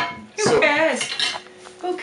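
Crockery and cutlery clinking: a sharp clink at the start and another about half a second in.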